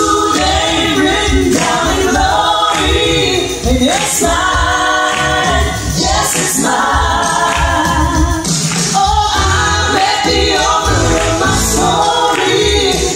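Live gospel music: several women singing together over a band with keyboard and a steady bass line.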